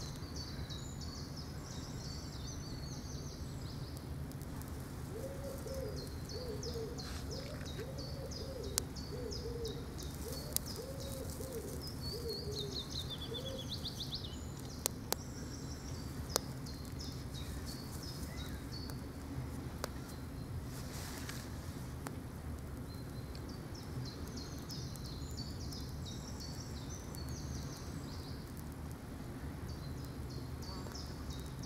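Songbirds singing repeated high phrases over a steady low outdoor rumble, with another bird's low hooting call repeated several times in the first half. A few sharp clicks sound in the first half, while the small twig fire is being lit.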